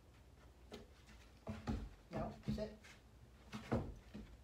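A few short, low voice sounds, with light knocks on a wooden platform as a puppy shifts its paws on it.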